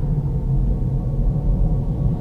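A steady deep rumble: an ominous low drone.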